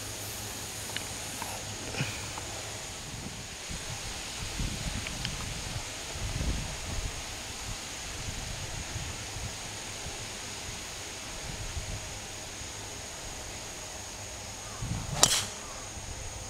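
A golf driver swung with a brief whoosh and striking the ball off the tee with one sharp crack near the end.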